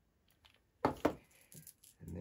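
Hard plastic toy vehicle being handled and set down: two sharp knocks about a second in, followed by a few lighter plastic clicks.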